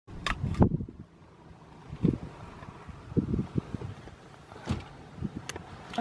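Wind buffeting the microphone in irregular low thumps and rumbles, with a few sharp clicks.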